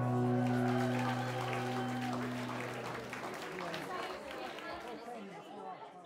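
The last strummed chord on an acoustic guitar rings out and dies away over about three seconds, under the murmur of a crowd chatting. The whole sound then fades out steadily.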